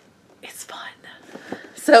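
A woman's soft, breathy whispering, then she starts to speak aloud near the end.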